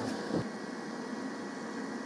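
A steady hiss of background noise at a constant level, with no distinct events in it.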